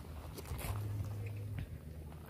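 Faint footsteps crunching on a gravel shoreline, a few soft steps, over a low steady rumble.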